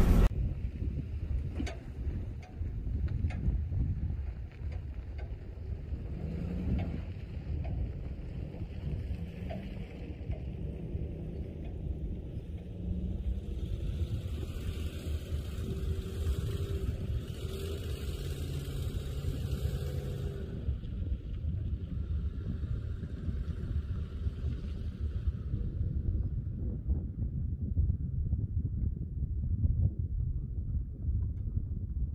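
Low rumble of a vehicle driving slowly over a rough dirt trail, heard from inside the cab, with knocks over the bumps in the first few seconds. After about twenty seconds the sound turns to a duller rumble with wind on the microphone.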